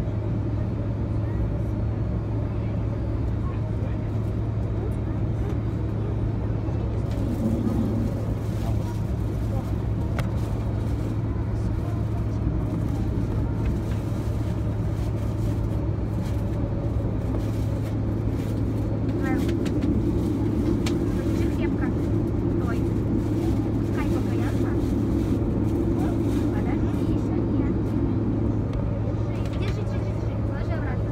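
Steady cabin noise of an Airbus A330-200 heard from a window seat beside the engine: its Pratt & Whitney PW4168A turbofans running at idle with a constant low hum, and the airflow hissing underneath.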